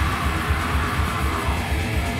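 Live heavy metal band playing: distorted electric guitars over drums with a fast, even kick-drum beat, and a shouted vocal into the microphone.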